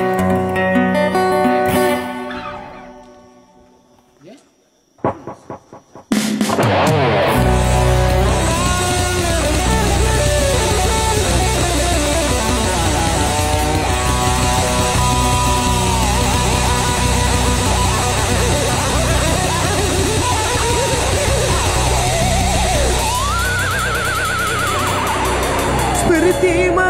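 Guitars strum a few chords that fade away, followed by a short quiet gap with a few taps. About six seconds in, a full, loud band sound starts as the intro of the next song, with a heavy bass and a melody line that bends up and down near the end.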